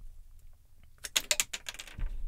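A quick flurry of sharp clicks and taps starting about a second in and lasting under a second, over a faint low room hum.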